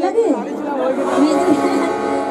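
A woman's voice through a stage microphone and loudspeakers, with a falling, drawn-out phrase and then a held note in a sing-song delivery.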